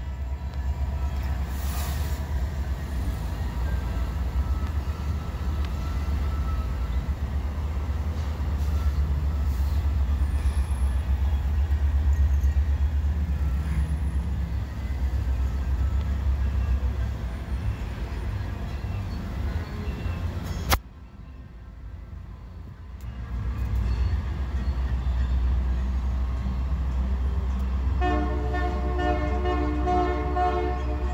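Decorated freight cars of the CPKC Holiday Train rolling past, a steady low rumble. A sharp click about two-thirds through is followed by a dip of a couple of seconds. Near the end a steady chord of pitched tones comes in over the rumble.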